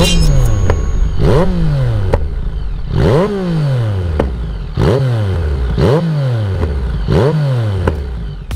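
Motorcycle engine, the Yamaha MT-09 Tracer's three-cylinder, revved in about six throttle blips. Each one climbs quickly in pitch and then falls back more slowly to idle.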